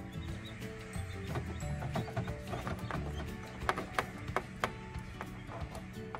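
Background music with held notes, and a few sharp clicks about two-thirds of the way in.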